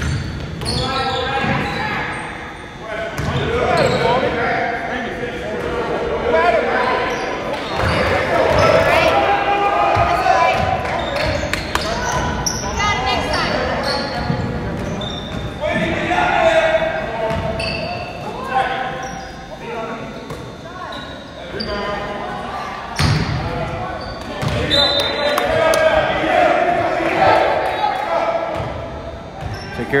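A basketball being dribbled on a hardwood gym floor, with sneakers squeaking and indistinct shouts and chatter from players and spectators, all echoing in a large gymnasium.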